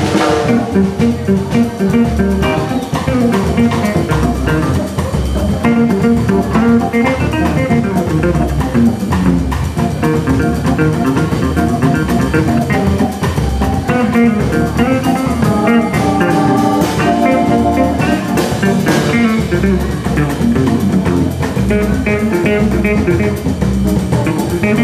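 Jazz organ trio playing live: an archtop hollow-body guitar playing lines over a drum kit with cymbals, and a Hammond B3 organ supplying the low end.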